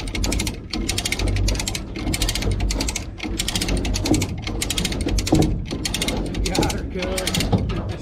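Trailer-mounted hand winch being cranked, its ratchet pawl clicking rapidly in runs of about a second with short pauses between strokes, as it drags a riding lawn mower whose wheels are locked.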